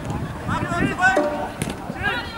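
Players' voices calling across the field, with one short ringing beat about a second in from the jugger stone count, which marks time with a beat every one and a half seconds.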